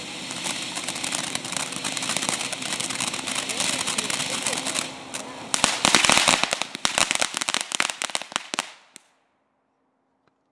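Ground fountain firework spraying sparks with a steady hiss and crackle. About five and a half seconds in it breaks into a loud burst of rapid crackling pops, which thins out and dies away about nine seconds in.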